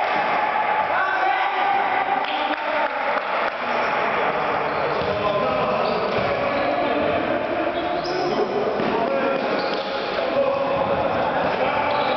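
Indoor futsal play in a hard-floored sports hall: the ball being kicked and bouncing off the floor, with players' indistinct shouts, all echoing in the large room.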